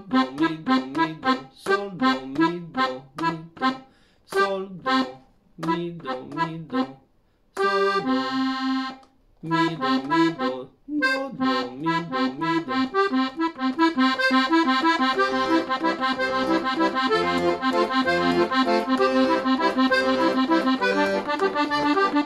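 Hohner Verdi II piano accordion playing a four-note arpeggio accompaniment pattern with left-hand bass notes. It starts as separate short notes with gaps, holds a chord around eight seconds in, then from about ten seconds runs on as a steady, unbroken stream of arpeggio notes.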